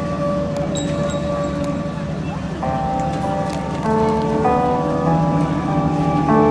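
Synth keyboard holding a steady tone, then about two and a half seconds in moving into a slow run of sustained chords as a song begins, with the murmur of a crowd underneath.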